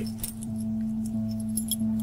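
Sound effect of a key jiggling the pins in a lock: faint, scattered small metallic clicks and clinks over a low, steady music drone.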